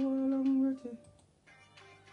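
A man humming one held note into a close microphone for about a second, the pitch dropping off as it ends, over quieter background music.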